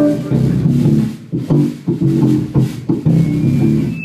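Live six-string electric bass playing a choppy line of short low notes, with drums behind it.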